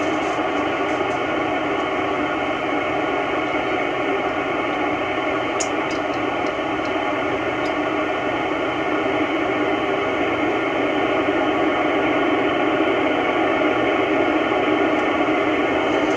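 Steady FM receiver hiss from an Icom IC-9700 transceiver's speaker on the 2-metre satellite downlink. No voice comes through: the AO-91 satellite signal has faded out while the antenna array swings around.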